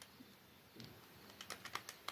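Buttons on a Casio fx-991ES Plus scientific calculator being pressed to key in a calculation: a few faint, quick plastic key clicks, mostly in the second half.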